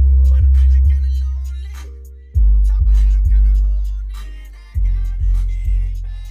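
Hip-hop track played loud through a car subwoofer system, a CT Sounds Meso 12 subwoofer driven by a CT Sounds AT1400.1D amplifier. Long, deep bass notes hit three times, about two and a half seconds apart, each fading out.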